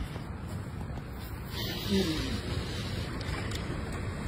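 Overheated electric bike battery venting: a steady hiss over a low rumble, growing louder and brighter about a second and a half in.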